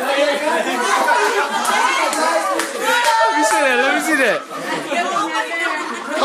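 Several people talking over one another, loud party chatter with no single clear voice.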